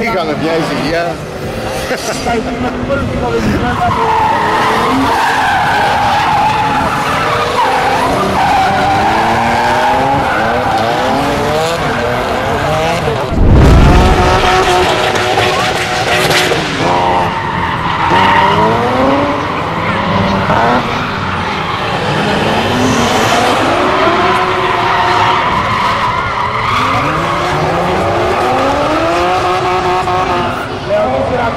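Drift cars' engines revving hard, their pitch climbing again and again as they slide, over steady tyre skidding noise. A loud low thump comes about halfway through.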